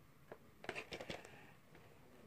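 Faint handling noise in a small room: a few light clicks and taps, most of them bunched together about a second in.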